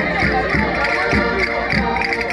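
Massed concertinas (Minho button accordions) playing a lively folk dance tune together in sustained chords, over a low beat about twice a second, with voices mixed in.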